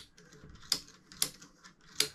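A few light, sharp clicks about half a second apart, made by small metal parts at the drive end of a Tecumseh 37000 snowblower starter motor as they are handled by hand.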